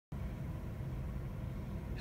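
Steady low-pitched hum of room background noise, with no other events.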